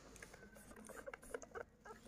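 Faint, irregular small clicks and scratches of a knife paring the rough skin off a raw beetroot.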